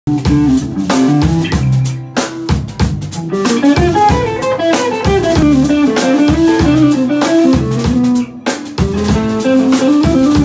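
Live band jamming: guitars playing a melodic line over a drum kit, with short breaks about two seconds in and again about eight seconds in.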